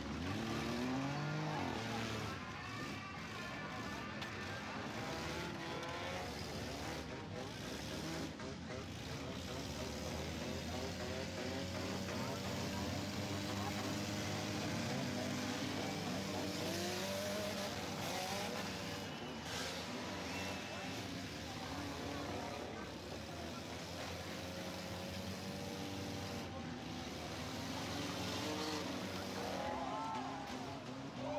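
Several demolition derby cars' engines revving at once, their pitches repeatedly rising and falling as the cars push and ram each other on the wet track.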